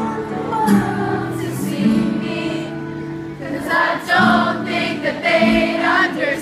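Live acoustic guitars playing held chords while many voices sing together, the singing growing louder in the second half.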